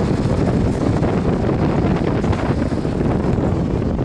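Steady wind buffeting the microphone, a continuous low rumble.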